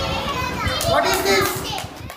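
A group of young children talking and calling out at once, several high voices overlapping.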